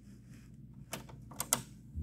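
Transport buttons of a Technics RS-D180W cassette deck being pressed: three sharp mechanical clicks in the second half, two of them close together.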